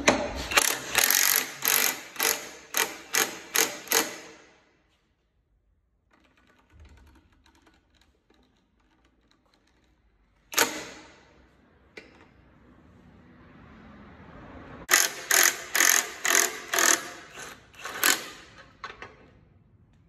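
Cordless impact wrench hammering on the threaded screw of a puller bolted to a transmission housing, in two runs of rapid pulses about three a second, near the start and again in the last few seconds, with a single sharp click in between.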